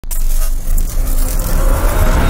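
Loud sound effect of an animated video intro: a low rumble with a rushing hiss, starting abruptly.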